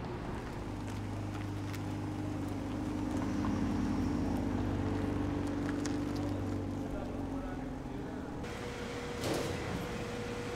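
A car engine running at a low, steady speed, swelling in the middle and then fading. Near the end it gives way to a steady hum and a brief rattle.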